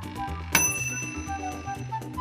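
Toaster oven's timer bell dinging once. It is a single sharp ring that hangs for over a second, marking that the bread is done warming. Background music plays underneath.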